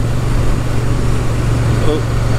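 Triumph Bonneville T100 parallel-twin engine running steadily while the motorcycle cruises, with rushing wind and road noise over it.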